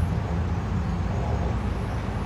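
Street traffic noise: a steady, low rumble of passing vehicles.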